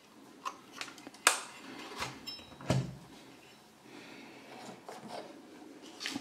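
Scattered clicks and knocks of a plastic solar charge controller case and its metal heat sink being handled and set down, with a screwdriver in hand. The sharpest click comes a little over a second in, and a duller thump near the middle.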